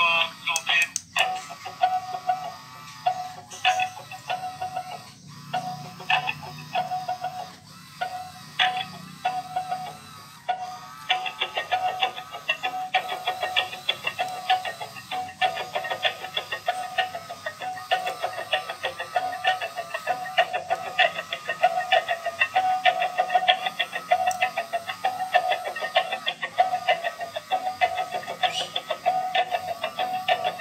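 A dancing cactus toy playing an instrumental tune through its built-in speaker. The music is broken and sparse at first, then settles into a steady beat about eleven seconds in.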